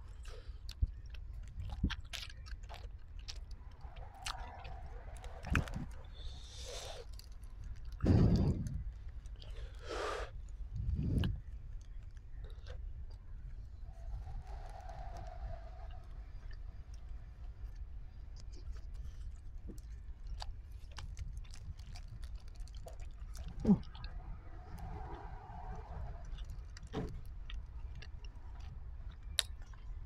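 A person chewing hot buffalo cheese curds, with scattered crinkles and clicks from the plastic bag they are eaten from. There are a couple of louder bumps about a quarter and a third of the way in.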